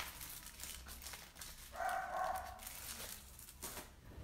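A dog makes one drawn-out, pitched call about a second long near the middle, with light paper rustling and handling clicks around it.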